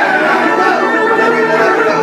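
Crowd chatter: many overlapping voices talking at once, loud and steady.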